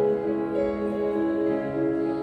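Slow, gentle accompaniment to a solo song: held keyboard notes and chords, changing pitch every half second or so.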